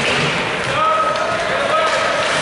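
Ice hockey play in an indoor rink: sticks and puck knocking on ice and boards, skates on the ice, and short shouts from players and spectators.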